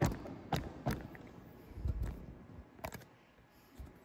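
Handling noise from a phone camera on a broken tripod: a sharp knock at the start, then a few clicks and knocks, with a dull thump about two seconds in.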